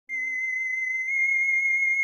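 A single high, steady electronic tone with a slight wobble, the opening note of the intro music.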